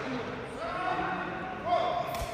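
Voices calling out across a large hall, with a rattan sepak takraw ball kicked with a sharp thud at the very end.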